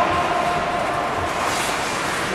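Ice hockey skate blades scraping and carving on the ice during play, with a steady hum in the hall underneath.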